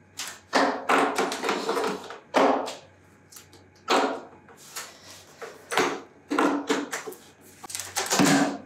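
Stiff plastic lid of a five-gallon paint bucket being pried up by hand around its rim: a string of short, irregular cracks and scrapes of plastic.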